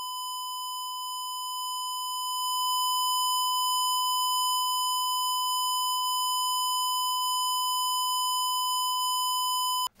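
Steady 1 kHz test tone from a Behringer CT100 cable tester, played through the mixer to calibrate its output level. It gets louder about two and a half seconds in as the channel level is raised, and cuts off abruptly just before the end.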